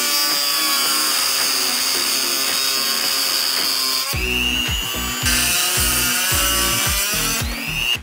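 Small high-speed rotary tool with a cutoff wheel whining steadily as it cuts a tooth off a metal cam sensor trigger wheel. About halfway through, its pitch dips and recovers a few times as the wheel bites, and background music with a beat comes in under it.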